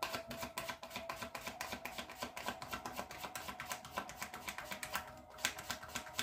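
A deck of tarot cards being shuffled by hand: a rapid, continuous run of light card clicks.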